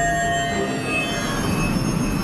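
Fantasy magic-spell sound effect: a sustained shrill energy ringing made of several steady high tones over a rushing hiss, as a glowing blue spell is cast.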